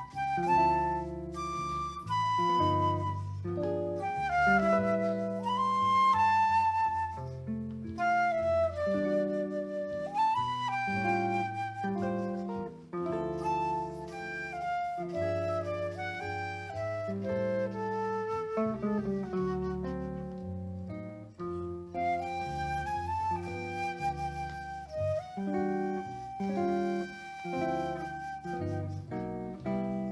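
Slow jazz ballad played live: a flute carries the melody over archtop guitar chords and an acoustic bass guitar.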